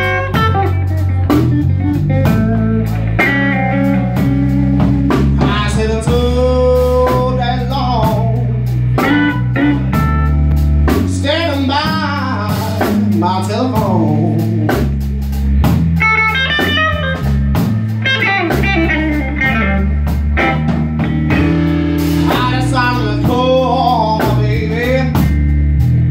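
Live electric blues: a Stratocaster-style electric guitar through a small Fender amp playing lead lines with bent notes over a drum kit.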